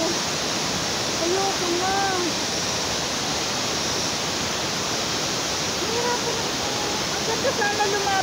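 Steady, even rush of Pulang Bato Falls, a waterfall pouring down a rocky gorge. A woman's voice murmurs briefly twice over it.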